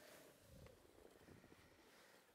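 Near silence: a faint low rumble of skis sliding over snow, with a faint steady tone fading out in the first second.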